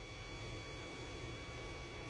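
Quiet room tone: a faint, steady hiss with a few thin, steady high-pitched electrical whine tones, and no other event.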